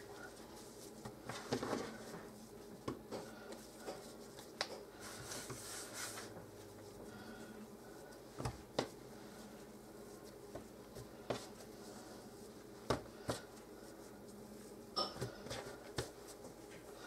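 Faint handling of soft pastry dough on a kitchen countertop: scattered soft taps and knocks as pieces are torn off and set down, with a brief rubbing hiss partway through.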